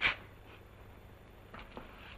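Quiet footsteps: a short scuff right at the start, then a couple of faint steps about a second and a half in.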